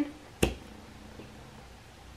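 Glass lid pulled off a jar candle with one sharp click about half a second in, followed by low room tone.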